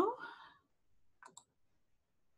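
The end of a spoken question fading out, then near silence with two faint, quick clicks about a second and a quarter in.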